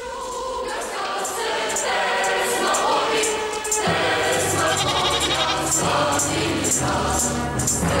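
Soundtrack music: a choir singing over an instrumental backing, fading in at the start. A bass line and a regular beat come in about four seconds in.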